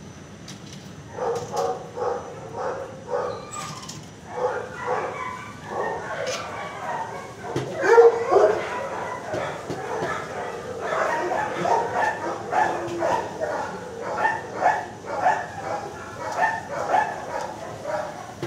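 Dogs barking and yipping in shelter kennels: a run of short, overlapping barks starts about a second in and goes on throughout, loudest around eight seconds in.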